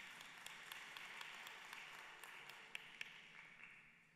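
Faint scattered clapping from a congregation, dying away near the end.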